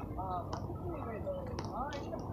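A man speaking, his voice coming in short phrases, over a low steady background rumble.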